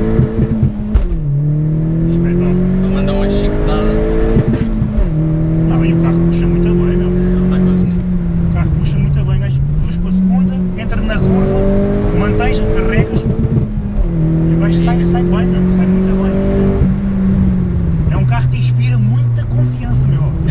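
Opel Corsa OPC's 1.6 turbo four-cylinder engine heard from inside the cabin with its exhaust cut-out open, pulling through the gears. The engine note climbs and drops at each change, about a second in, near five seconds, near fourteen seconds and again near eighteen seconds, and holds steadier in between.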